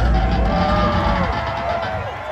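Amplified electric guitar ringing out through a large outdoor PA between songs, a low rumble dying away about halfway through, while a few sustained tones swell and fall, with the crowd cheering underneath.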